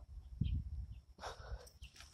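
Pekin ducks giving a couple of short, quiet, raspy quacks, with a low bump about half a second in.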